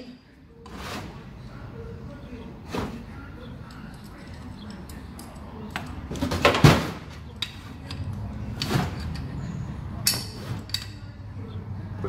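Scattered metallic clicks and knocks of a small hand tool and metal parts being handled on a gearbox while a grub screw is done up, with the loudest knock about six and a half seconds in and a quick cluster near the end.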